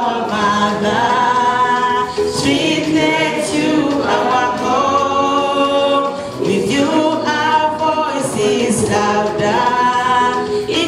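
A group of people singing together unaccompanied, a cappella, in phrases of about two seconds with held notes.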